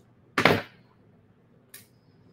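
A single short knock about half a second in as metal wire cutters are set down on the work table after trimming the earring's copper wire, followed by a faint click near the end.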